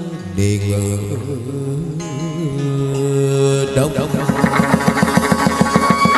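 Chầu văn ritual music from a live ensemble: sustained melodic lines, joined about four seconds in by a fast, even beat of about five strokes a second.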